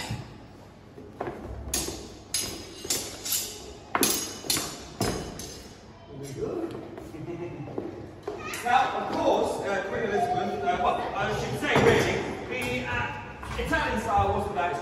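Steel rapier blades clashing, about nine sharp, ringing strikes in quick succession between one and five seconds in. Voices take over in the second half.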